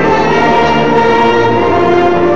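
Orchestral music playing loudly, with long, steadily held chords.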